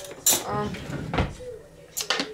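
A woman speaking briefly, then a dull knock about a second in and a sharp click near the end as a glass jar with a plastic screw lid is handled.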